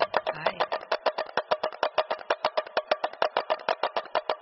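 A percussion-only break in a recorded samba song: a small wooden-sounding percussion instrument plays a fast, even rhythm of sharp clicks, about nine strikes a second, with no voice, bass or guitar.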